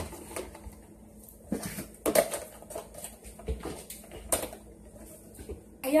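Food containers and a plastic milk jug being moved about on the shelves of an open refrigerator: a few short knocks and rustles, the loudest about two seconds in.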